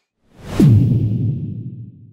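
A transition whoosh sound effect. It swells in about half a second in, with a low tone sliding down in pitch, then fades out over the next second and a half.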